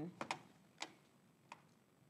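Four faint, sharp clicks, irregularly spaced: two close together just after the start, the loudest a little before the middle, and a softer one later.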